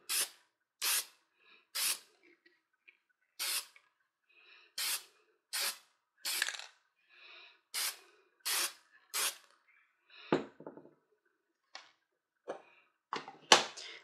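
An aerosol can of spray lacquer hissing in about ten short bursts, each well under a second, as a finish coat goes onto a rawhide lace wrap. A single knock comes about ten seconds in, then a few light clicks.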